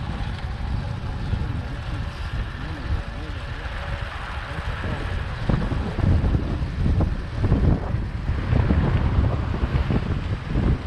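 Wind buffeting the microphone over the running engine of a small boda boda motorcycle taxi riding along a road. The wind gusts grow heavier and louder about halfway through.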